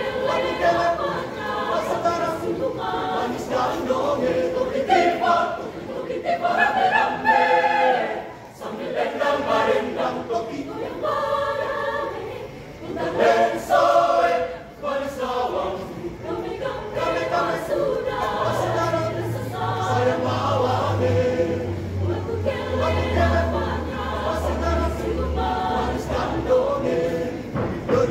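Large mixed choir of men and women singing a song in Indonesian. A low, steady drone joins about two-thirds of the way through and holds under the voices.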